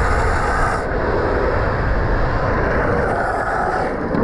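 Longboard's urethane wheels rolling fast over rough asphalt, a steady loud grinding rush mixed with wind on the microphone.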